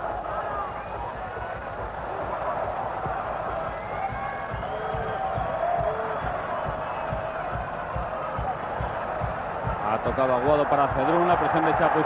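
Large football stadium crowd making a steady din, heard through an old television broadcast, with a man's voice coming in near the end.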